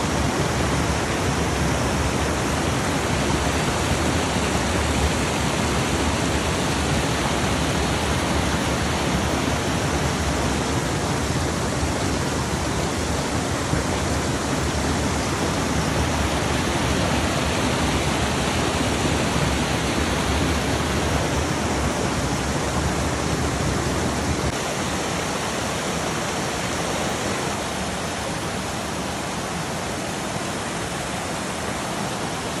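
Small waterfall and cascading creek rushing over rock ledges: a steady, even wash of water. Near the end it gets slightly quieter and loses some of its low rumble.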